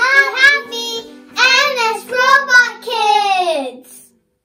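A child singing a short high-pitched phrase over soft background music, ending on a long note that falls in pitch.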